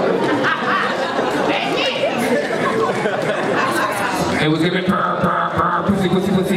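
Speech and chatter: several voices talking at once.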